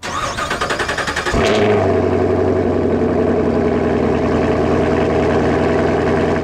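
An engine cranked by its starter for about a second, catching about 1.3 seconds in and settling into a steady idle.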